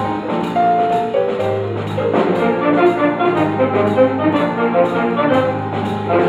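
Jazz big band playing live: the saxophone, trombone and trumpet sections play moving lines over piano, bass guitar and drums, with long held low bass notes underneath.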